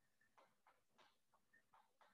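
Near silence, with a series of very faint short scratches of chalk writing on a blackboard.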